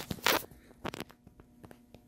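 Handling noise: a short rustle a quarter second in, then a sharper crackle near one second and a few soft clicks.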